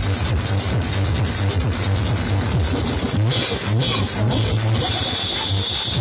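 Electronic dance music with heavy, gliding bass, played very loud through stacked sound-system loudspeaker cabinets. A high, steady tone comes in and out about halfway through, then holds.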